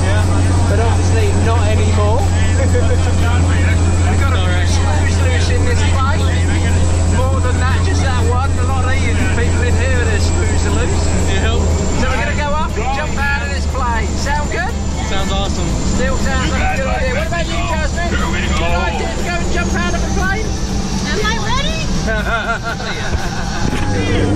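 Steady drone of a small jump plane's engine and propeller heard inside the cabin, with a thin high whine over it that dips slightly in pitch near the end; the low drone eases about halfway through. Voices chatter and laugh over it.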